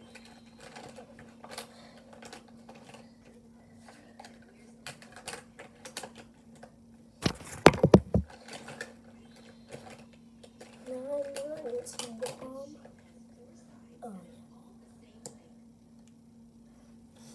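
Small clicks and taps of makeup items being handled close to the microphone. About halfway through comes a loud rustling bump as a hand brushes the camera, and a few seconds later a short hummed voice, all over a steady low hum.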